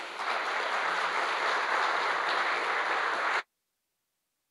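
Audience applauding in a hall, steady clapping that cuts off suddenly about three and a half seconds in.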